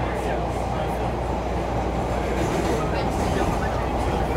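Inside a CTA 5000-series subway car running through the tunnel: a steady, dense rumble of wheels on rail and running gear with a low hum.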